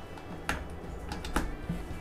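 Two sharp clicks about a second apart over a faint steady background, as the mains switch is thrown to power a microwave oven transformer's primary winding in series with a shunt resistor.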